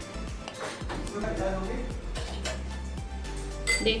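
Background music with a few light clinks of a steel spoon against a stainless steel jar as soaked urad dal is spooned into it.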